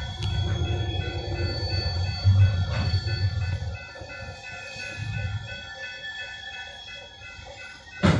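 Railroad grade-crossing bell ringing in a steady repeating pattern over the low rumble of an EMD GP38-2 diesel locomotive's 16-cylinder engine, which drops away about four seconds in.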